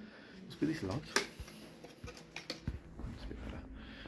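A man's voice says a single word, then pauses, with a sharp click about a second in and a few faint ticks over low room noise.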